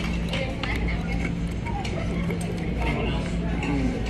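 Restaurant background: indistinct voices over a steady low hum, with a few light clicks.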